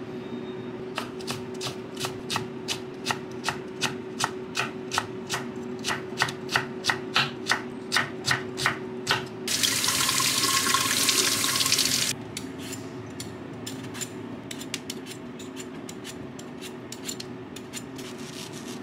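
Kitchen knife slicing red cabbage on a wooden cutting board, about three or four even strokes a second, growing louder. About nine and a half seconds in, a kitchen tap runs over a mango for about two and a half seconds and cuts off, followed by scattered light knocks.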